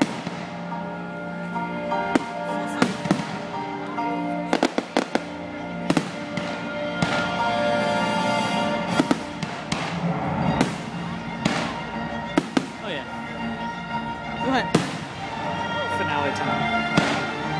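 Aerial fireworks shells bursting overhead: a string of sharp bangs at uneven intervals, several in quick succession about five seconds in, over band music playing throughout.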